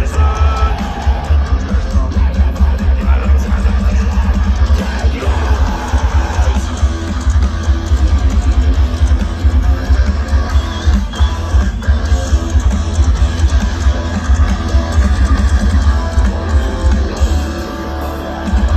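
Metalcore band playing live through a festival PA, heard from inside the crowd: distorted electric guitars and bass over rapid, pounding kick drums.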